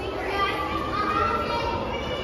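Background voices of children and other visitors talking and calling out, several at once, with no one voice clearly in front.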